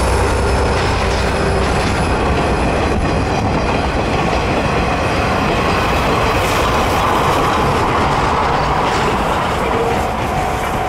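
Passenger train passing close by: the coaches, then the C11 steam locomotive at the rear, their wheels rolling and clattering over the rails, loud and steady throughout.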